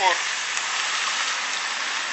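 Steady hiss of a trolleybus's tyres rolling along a wet street as it passes close by.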